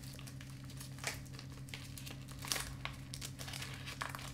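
Faint, scattered crinkling and rustling of a chewing-tobacco package being handled while another tobacco bit is taken out.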